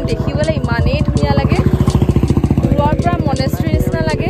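A small engine running steadily nearby with a fast, even pulse, with voices over it.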